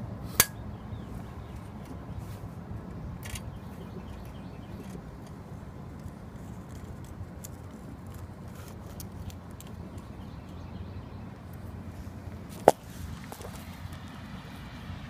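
Small metallic clicks and ticks from a tape measure being handled against a fish, over a steady low rumble. There is a sharp click just after the start and a louder one near the end.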